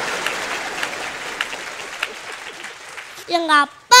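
Studio audience applauding, fading away over about three seconds.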